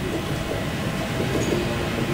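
Steady low rumble and hiss of a conference hall's background room noise, with no distinct events.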